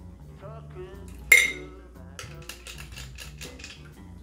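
A stainless steel cocktail shaker clinks sharply against a metal fine-mesh strainer once, about a second in, during a double strain into a glass, with steady background music underneath.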